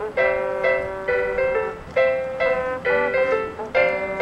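Marching band playing a passage of full chords with sharp, accented entries, about two a second.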